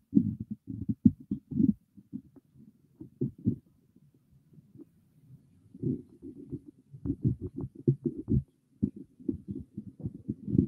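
Microphone handling noise: irregular low thumps and rumbles as a hand grips and moves a large microphone on its boom arm, quieter for a moment in the middle and busiest a few seconds before the end.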